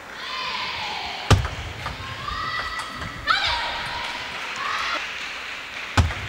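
High-pitched shouts from women's voices, several of them held or sliding in pitch, as a table tennis point is won. One loud thump comes a little over a second in, and a smaller knock a little after three seconds.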